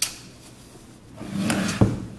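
Handling sounds: quiet for about a second, then a short rubbing scrape that ends in a dull thump near the end.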